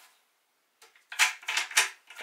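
A quick run of four or five sharp clicks and taps, starting about a second in, as a screw-in foot with a threaded stud is turned and handled against a subwoofer's MDF cabinet.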